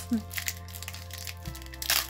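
Background music with held low notes that change about one and a half seconds in, over light crinkling of foil Pokémon booster-pack wrappers being handled, with a bright crinkle near the end. A short laugh at the start.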